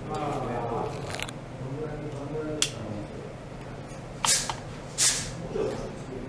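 Indistinct voices talking quietly, with a sharp click about two and a half seconds in and two short hissing noises near the end.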